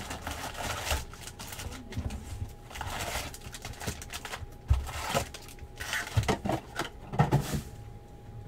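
Cardboard and foil-wrapped card packs being handled: the seal of a trading-card hobby box torn back, the lid lifted and the packs pulled out and set down, giving irregular rustles, crinkles and light taps.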